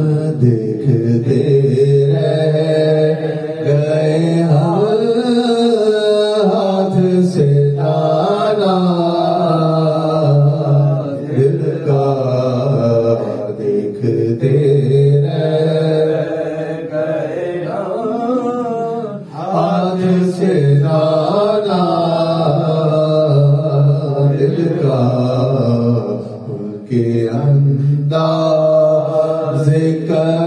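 Male Sufi devotional chanting, unaccompanied: a slow melodic line sung with hardly a break, over low held notes.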